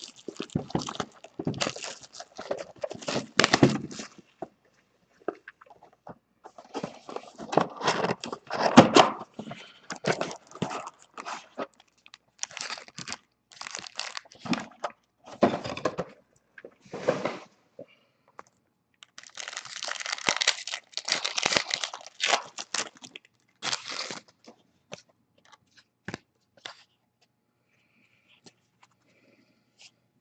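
A trading-card hobby box of 2014 Panini Certified football being torn open and its foil card packs crinkled and ripped open. The crackling and tearing come in irregular bursts, then thin out to a few light clicks after about 24 seconds.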